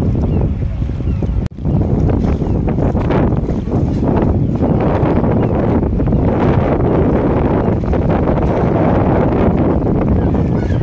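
Wind rumbling and buffeting on a phone's microphone, steady and loud, with a brief dropout about one and a half seconds in.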